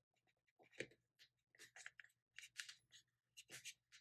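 Faint, short rustles and ticks of a glossy sticker-book page being handled as fingers pick at a sticker's cut edge to lift it, a few a second.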